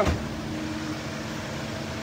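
Hyundai Starex van idling: a steady low hum with a faint even drone, and a brief low thump at the very start.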